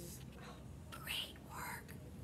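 A woman whispering a few short words, faint and without voice, about a second in.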